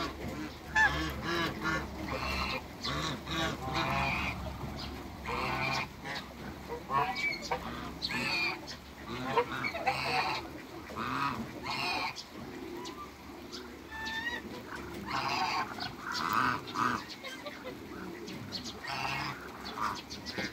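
Egyptian geese and ducks calling: repeated honks, some in quick runs, with short gaps between.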